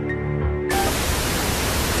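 Sustained background music notes, cut off about two-thirds of a second in by a sudden, steady hiss of television static (snow) used as a transition effect.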